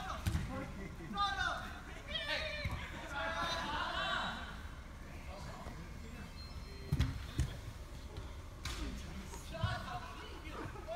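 Players shouting and calling to each other across an indoor soccer pitch, with sharp thuds of the ball being kicked, the loudest about seven seconds in and another shortly after.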